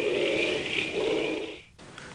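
A film monster's growl sound effect: rough and noisy with no clear pitch, cutting off suddenly a little before the end.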